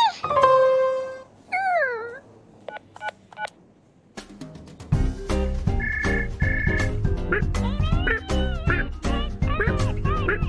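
Cartoon gibberish vocal squeaks gliding up and down, then a few short mallet plinks and a brief lull. Background music with a steady beat starts about five seconds in. A desk telephone rings twice over it, and more squeaky cartoon vocal sounds come near the end.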